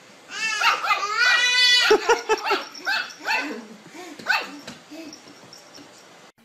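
A baby laughing in high-pitched, wavering squeals, then a string of shorter laughing bursts that grow fainter toward the end.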